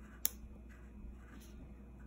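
A black wax crayon drawing short strokes on paper, a faint scratchy rubbing, with one sharp tap about a quarter second in.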